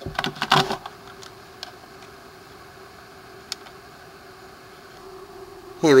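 A brief clatter of hard plastic being handled in the first second as a plastic replica blaster is picked up, then a steady low hum with a faint tick or two.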